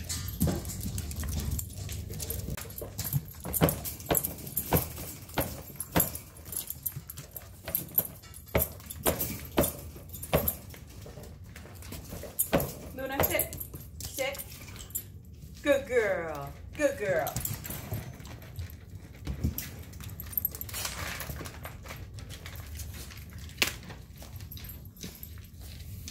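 A dog whining in a few short rising cries about halfway through, amid irregular clicks, taps and rattles as dog food is served into a plastic slow-feed bowl and the dog comes to it.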